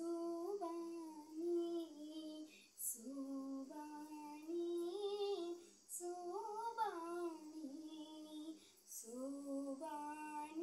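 A girl singing a slow melody solo, holding long notes and gliding between them, in phrases of about three seconds with short breaks between.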